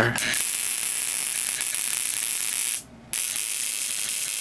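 Relay-buzzer ignition coil driver running, its relay chattering as it pulses an ignition coil that fires high-voltage sparks across a spark gap: a continuous harsh, hissing buzz. It cuts out briefly about three seconds in, then starts again.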